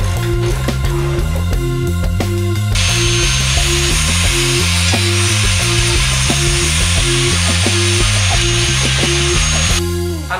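Rock music with a steady beat and guitar. From about three seconds in, an angle grinder is heard working on the rusty steel chassis tubes: a steady hiss with a thin high whine that cuts off just before the end.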